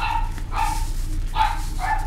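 A dog barking: four short, sharp barks or yips, roughly half a second apart.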